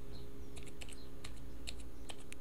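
Computer keyboard being typed on: a scatter of light, quick keystrokes over a steady low hum.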